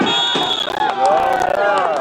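Spectators shouting and cheering in many overlapping voices. A referee's whistle blows briefly near the start, signalling the end of the play after the tackle.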